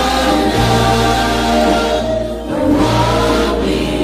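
Choir singing a gospel hymn over steady instrumental backing, two sung phrases with a brief break between them about two and a half seconds in.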